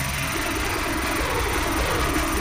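A game-show randomizer sound effect: a steady low rumble, engine-like, with a thin high whine over it, as the dare screen cycles through its choices.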